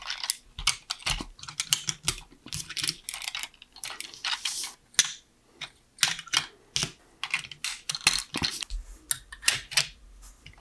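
LEGO plastic bricks and parts being handled and pressed together by hand: irregular plastic clicks and clatter, with one louder click about halfway through.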